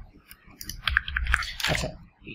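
A few sharp computer mouse clicks during Photoshop editing, with a short spoken word near the end.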